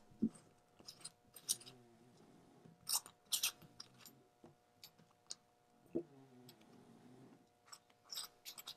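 Faint small clicks and cloth rustling from hands working on a stainless steel dive-watch case under a cloth, a few scattered taps about a second apart.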